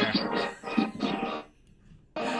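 Movie soundtrack music from a television playing in the background, picked up through a video call's microphone; it stops about a second and a half in.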